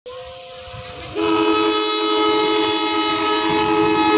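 Diesel locomotive air horn sounding as the train approaches: a fainter steady tone at first, then about a second in a loud, long chord of several notes held steadily.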